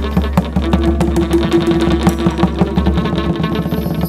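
Chầu văn ritual music: quick, steady wooden clapper and drum strokes with plucked strings, and a held note in the first half.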